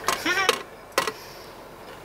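A short vocal sound at the start, then a single sharp click about a second in, over a quiet low hum of a car cabin.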